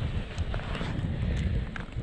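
Wind buffeting on the microphone as an uneven low rumble, with a few faint clicks and rustles from handling close to it.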